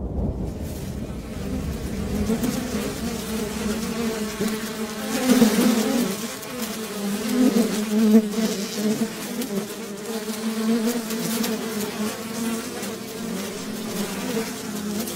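A buzzing insect drone that wavers steadily throughout and swells louder twice, about a third of the way in and again past the middle.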